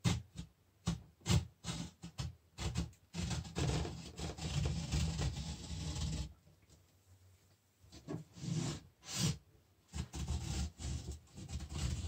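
A hand-held edge-banding trimmer is drawn along the edge of a particleboard shelf, its blade shaving off the overhanging iron-on edge banding with a dry scraping. It gives a few short strokes at first, then a longer continuous scrape, a brief pause, and more scraping strokes near the end.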